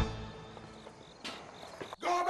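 Background music dies away on its last notes, leaving crickets chirping in a quiet night ambience. A brief soft swish comes just past the middle.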